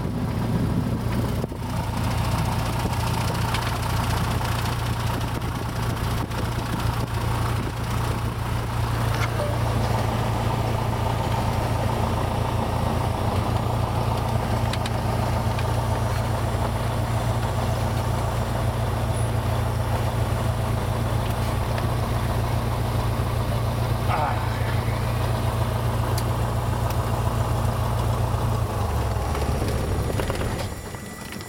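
Cessna 172's single piston engine and propeller running steadily at taxi power, heard from inside the cabin. Near the end the engine note drops lower as the power comes back.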